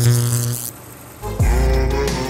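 Outro transition: a steady low buzzing hum with a high hiss, like an old-film or glitch effect, stops abruptly under a second in. After a brief lull, the end-card music starts about a second and a half in with a deep falling bass sweep.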